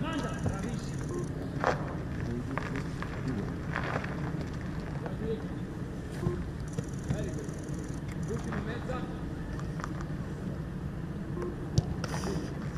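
Open-air football training ambience: a steady low rumble with faint distant voices, broken by a few sharp thuds of a football, the loudest near the end.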